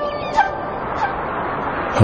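Bird cries, two short calls about half a second and a second in, over an even background hiss and faint held musical tones.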